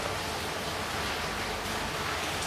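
Steady hiss of background room noise, with no speech or distinct events.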